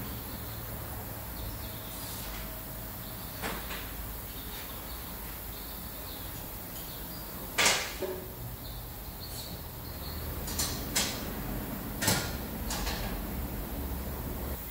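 A few scattered sharp knocks and clicks of tools working the rear toe adjustment under a car on an alignment lift, the loudest a little past halfway, over a steady low shop hum.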